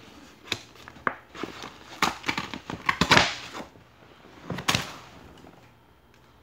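Paper envelope and packaging being handled: irregular rustling and crackling in short bursts, the longest about three seconds in and another near the end, as a card is worked out of its paper wrapping.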